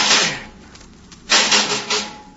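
Radio-drama sound effect of a metal rod scraping and knocking against a metal bulkhead to pry a clinging worm loose: two harsh rasping strokes about a second and a half apart.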